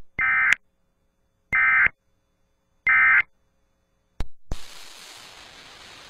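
Emergency Alert System end-of-message data bursts: three short, identical buzzy digital screeches about a second and a quarter apart, signalling the end of the alert. Two clicks follow, then a steady hiss.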